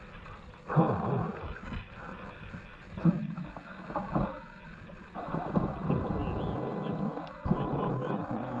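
A man breathing hard and grunting with effort while clambering over rocks, in uneven bursts with scuffing in between.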